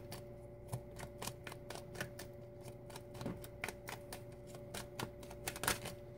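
A tarot deck being shuffled by hand, the cards clicking against each other in a quick, irregular run of soft clicks over a faint steady hum.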